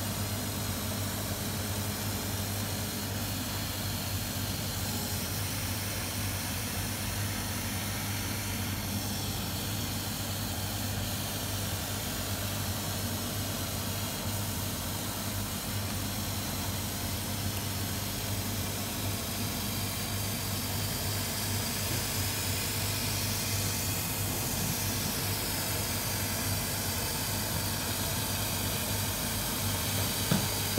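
150 W CO2 flatbed laser cutter (Laserscript LS2515 PRO) running a cutting job on 3 mm cast acrylic: a steady hum and hiss from its air assist and fume extraction, with faint whines rising and falling as the cutting head speeds up and slows down.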